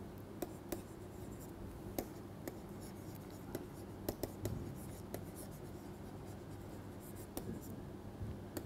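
Stylus writing on a tablet screen: a string of light, irregular taps and scratches as pen strokes are made, over a steady low hum.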